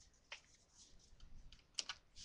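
Faint, sparse clicks and taps of hands handling trading-card packs, with a couple of sharper ticks near the end.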